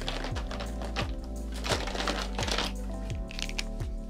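Background music with a steady beat, over irregular clicking and clattering of plastic marker pens being rummaged through in a plastic storage box.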